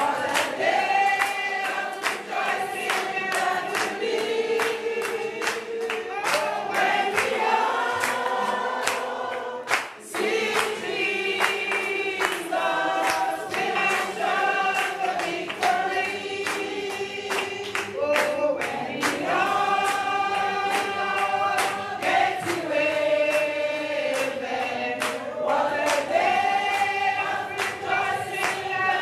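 A congregation of mostly women's voices singing a gospel chorus together, with hand-clapping keeping the beat.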